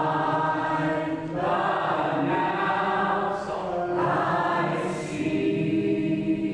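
A small choir of quadriplegic singers singing together, holding long notes that move to a new pitch every second or so.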